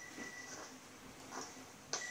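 Faint electronic signal tone from a warship's detection room sounding twice, a short high beep about two seconds apart, over a low steady equipment hum. At this slow rate it is the routine signal; in danger it sounds faster to alert the crew.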